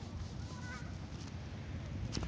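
A faint, brief wavering call from an animal about half a second in, over a low steady rumble.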